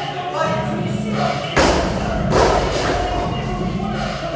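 Two heavy thuds of a weight dropped on a gym floor, the first about a second and a half in and the second just under a second later, over steady background music.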